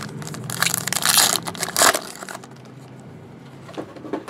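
Crinkling and rustling of trading cards and a foil pack wrapper being handled, in a run of sharp bursts over the first couple of seconds that then dies down.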